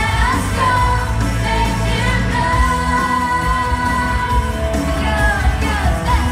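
Upbeat pop-style worship song with singing, the voice holding one long note through the middle.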